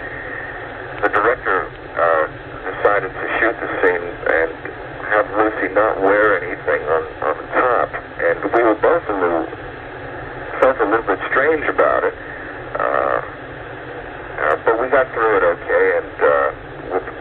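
Speech only: a man talking over a telephone line on a radio call-in broadcast. The voice sounds thin, like a phone call.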